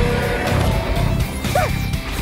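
Animated-battle magic sound effects, a dense layered crash of energy attacks, over dramatic background music. A short pitched sound rises and falls near the end.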